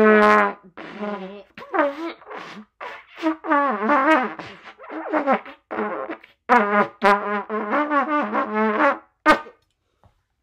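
Trumpet blown as a string of short, wobbly blasts with wavering, bending pitch and brief gaps between them, ending on a short blast near the end. The honks are deliberately unmusical.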